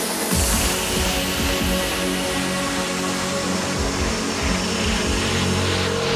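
Electronic trance music: sustained synth chords, with a rhythmic bass line coming in just after the start.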